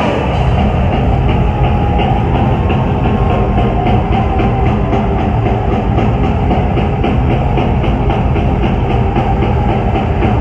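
Heavy metal band playing live and loud: distorted electric guitar over a drum kit with fast, even drumming.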